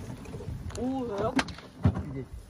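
A short voiced call or word from a person about a second in, with a few sharp clicks or knocks around it.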